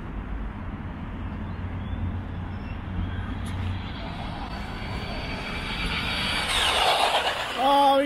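Electric RC trucks, a Losi and a Traxxas E-Revo, drag racing: a faint motor whine starts about halfway and swells into a loud rush of motors and tyres near the end, over a steady low hum.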